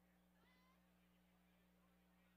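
Near silence: a faint steady hum, with a faint short chirp about half a second in.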